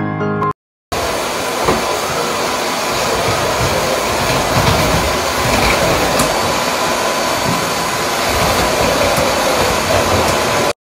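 Canister vacuum cleaner running on its highest setting, a steady rushing hiss with a faint whine, starting abruptly about a second in.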